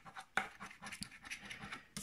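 A coin scratching the coating off a paper scratch-off lottery ticket, in a run of short, quiet, irregular scraping strokes.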